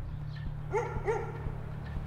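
A dog barking twice in quick succession, two short barks about a third of a second apart, over a low steady hum.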